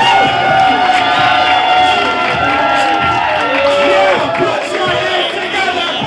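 A pop song with a singing voice playing for a runway walk, with a crowd cheering and whooping over it.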